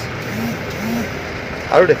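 A man pausing mid-statement, making two short hesitation hums before speaking again near the end, over a steady outdoor background noise.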